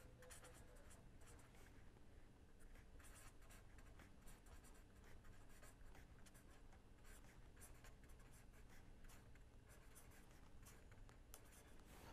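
Faint scratching of a pen writing on paper, a run of short, irregular strokes.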